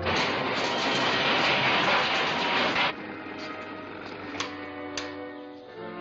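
Loud hiss from a smoking, overloaded electrical machine for about three seconds, cutting off suddenly: its diamond bearings have burnt out from too much power. Background music follows, with two sharp clicks.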